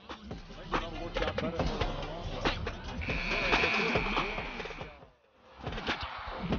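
Arena crowd noise with sneakers squeaking on the hardwood court. About three seconds in, a steady buzzer sounds for about two seconds as the game clock runs out at the end of the quarter. The sound then cuts off abruptly.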